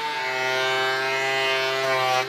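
Benchtop thickness planer running as it planes a walnut slab on a sled: a steady motor and cutterhead whine whose pitch dips slightly just after the start as the cut loads it, then holds.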